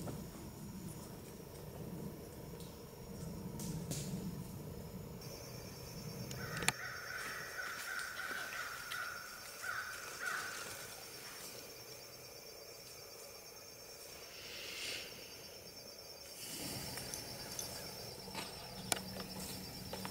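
Forest ambience: a bird calls in a short run of calls about eight to ten seconds in, over a steady, high, pulsing insect trill that starts about five seconds in. Footsteps and rustling in dry leaf litter fill the first six seconds.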